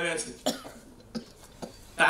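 A person coughing: one sharp cough about half a second in, then two lighter coughs.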